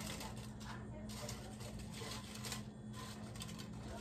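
Dried chiles de árbol faintly rustling and tapping against a nonstick comal as they are turned by hand while toasting, over a steady low hum.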